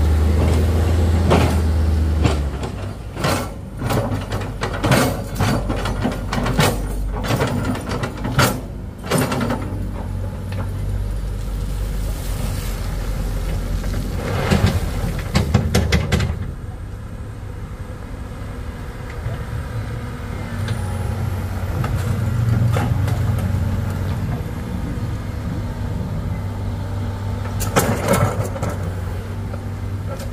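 Vehicle engines and clatter on a rough dirt road. A loaded Mitsubishi pickup's engine runs loudly in the first couple of seconds, followed by a run of sharp knocks and clatters. From about halfway a tracked excavator's diesel engine runs steadily while it digs, with a few clanks near the end.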